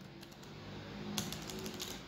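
A few faint computer keyboard keystrokes, clustered just over a second in, over a low steady hum.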